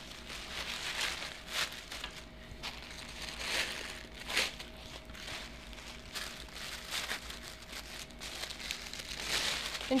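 Tissue paper rustling and crinkling in irregular short rustles as hands pull apart and fan out a stack of accordion-folded sheets.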